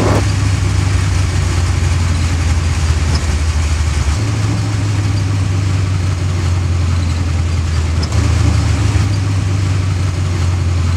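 A 1932 Ford hot rod's engine running steadily with a deep note, heard from inside the cabin. The note shifts slightly about four seconds in and again at about eight seconds.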